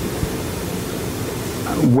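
Steady hiss of background room noise, with a faint click about a quarter of a second in.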